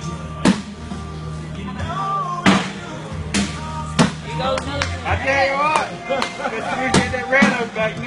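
Background music playing, with several sharp thuds of cornhole bean bags landing on wooden boards, and voices in the middle and near the end.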